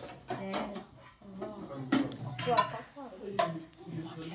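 Tableware being handled at a laid dining table: ceramic plates, casserole dishes and lids, and metal serving spoons clinking and knocking, several sharp clinks spread through the moment.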